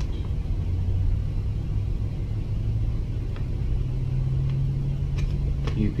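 A motor vehicle's engine running with a low, steady rumble whose note steps up in pitch about halfway through.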